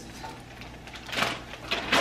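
A spatula scraping and stirring pieces of vegan chicken in a frying pan: two short scrapes, one about midway and one near the end, over a low steady hum.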